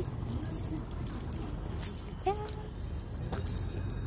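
Metal hardware on a dog's harness and leash clip jingling in a few short bursts as the dog moves, over a steady low background rumble. A brief vocal sound comes about two seconds in.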